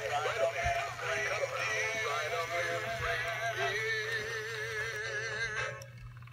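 Animated Gemmy cowboy Santa and snowman figures singing together through small built-in speakers: a tinny jumble of overlapping songs with warbling electronic voices. It stops just before the end.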